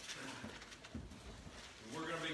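Faint rustling and soft knocks of a book being handled on a wooden pulpit, with a few low thumps about half a second and a second in.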